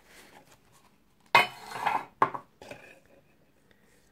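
Handling noise from a Casio G-Shock resin watch being worked off its cushion in the box: a sharp click, a short rustle, then a second click about a second later.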